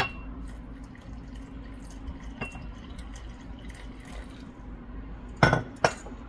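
Warm water poured from a glass measuring jug onto dry yeast in a ceramic bowl, a soft steady pour, opening with a sharp clink. Two loud knocks come near the end.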